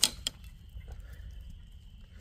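A sharp click, then a fainter one about a third of a second later, over a low steady rumble.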